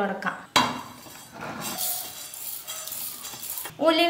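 Fenugreek seeds dry-roasting in a steel pan, being stirred so they scrape and rattle on the metal with a light sizzle. It starts suddenly about half a second in.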